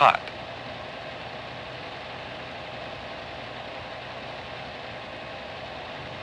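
Steady hiss with a faint low hum and no distinct events, at the same level as the gaps between the narrator's words: the background noise of an old 16mm film soundtrack.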